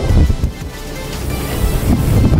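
Background music, with the thin plastic wrapper around a monitor rustling and crinkling as the monitor is lifted out of its foam packing.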